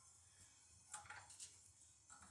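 Near silence, with faint handling of a stove's port cap as it is fitted back on: a light scrape about a second in.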